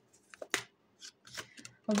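Tarot cards being handled: a few short, sharp flicks and slides of card stock, about half a second apart, the first the loudest. A woman's voice starts right at the end.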